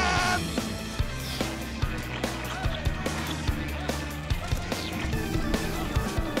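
Action cartoon background score with a steady bass line and regular drum hits about twice a second.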